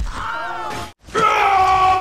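Two cartoon soundtrack snippets cut back to back. The first is a character's wavering cry lasting about a second. After a brief gap comes a louder, long held yell.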